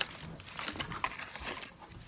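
Faint handling noise of a small plastic toy figure and its packaging: a sharp click at the start, then soft rustling and small clicks.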